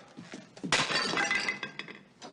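A dinner plate dropped onto a hard kitchen floor, shattering with a sudden crash under a second in, then pieces clinking and ringing for about a second as they settle.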